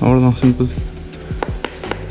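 A man's voice saying a few words over steady background music, followed by a few faint clicks.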